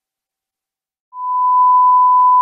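Silence, then about a second in a loud, steady, single-pitch test tone starts and holds: the beep that goes with TV colour bars.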